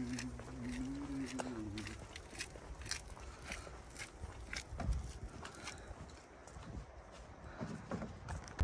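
Footsteps on brick paving, about two steps a second. For the first two seconds a low voice hums a wavering tune over them.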